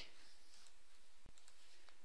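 A few computer mouse clicks over faint steady hiss, the clearest just past a second in.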